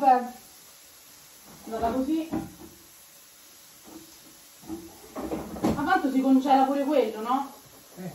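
Indistinct voice sounds in a small kitchen, in two stretches, with a few sharp knocks from kitchen handling such as a cupboard or appliance being opened and shut.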